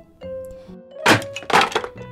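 Cartoon sound effect of a small wooden chair cracking and breaking under a child's weight: two sharp cracks about half a second apart, over soft background music.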